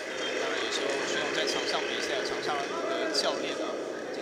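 Steady murmur of many voices from an arena crowd, with a few separate calls standing out midway.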